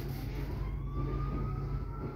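Empty open coal wagons of a freight train rolling past close by: a steady low rumble, with a thin whine that rises slowly in pitch.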